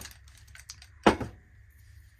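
Colored pencils clicking against each other in a mug as one is picked out, with one sharp knock about a second in as the mug is set down on the desk.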